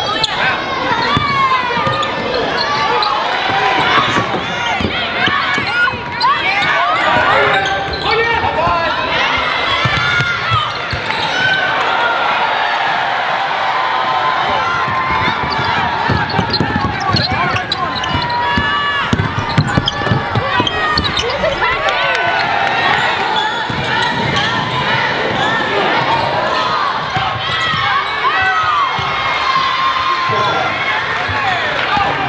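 Live basketball game sound in a gym: a ball being dribbled on the hardwood court, many short squeaks of sneakers, and indistinct voices of players and spectators throughout.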